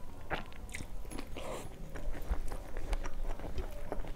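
Close-miked chewing of a mouthful of rice and curry, a run of short wet mouth clicks, while fingers mix rice on a steel plate.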